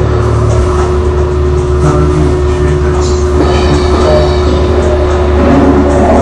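Experimental electronic music: a loud, dense low rumble with a single steady tone held through most of it.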